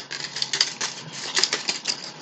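Crinkly packaging handled in the hands: a quick, irregular run of small crackles and rustles.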